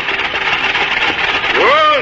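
Radio-drama sound effect of a horse-drawn mowing machine, a steady whirring. Near the end a man's voice starts calling to the horses.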